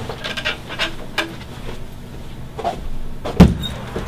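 A quick run of knocks and rattles, then one loud thump about three and a half seconds in.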